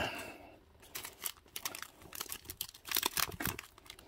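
Hard plastic graded-card slabs clicking and clacking against each other as a stack of them is slid across a mat, in irregular clusters of sharp clicks.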